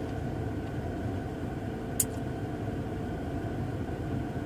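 Steady low hum of a car engine idling, heard from inside the closed cabin, with one short click about halfway through.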